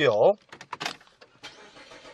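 Renault Samsung SM7's 2.5-litre V6 petrol engine being started with the push button: a few short clicks, then the engine starts about one and a half seconds in and runs steadily.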